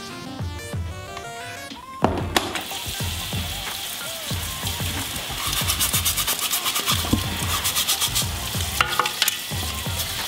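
Water spraying from a basin's hand-held shower head onto plastic combs, starting about two seconds in, with a stiff nail brush scrubbing along the comb teeth in rapid scratchy strokes in the second half.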